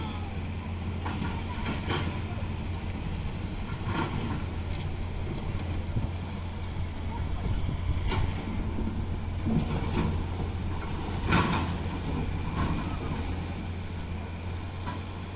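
Diesel engine of a heavily loaded Mitsubishi Canter dump truck running steadily under load as it crawls through a river, with a few knocks and a louder burst about 11 seconds in.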